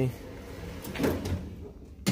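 A single soft clunk about a second in, over a faint low hum.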